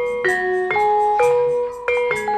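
Javanese gamelan music: struck metallophone keys play an even melody of about two notes a second, each note ringing on until the next is struck.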